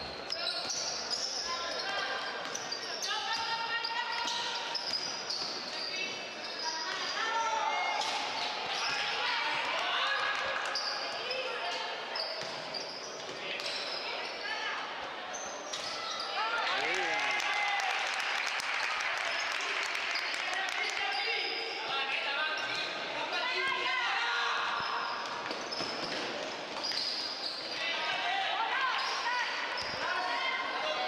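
Basketball being dribbled and bounced on an indoor court during a game in a sports hall, with voices of players and spectators calling throughout.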